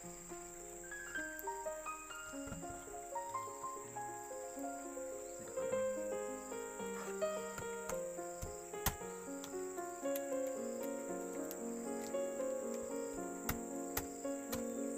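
A steady, high insect drone under a slow background melody of held notes. A few sharp clicks, the clearest about nine seconds in, come as a knife cuts into a durian's spiky husk.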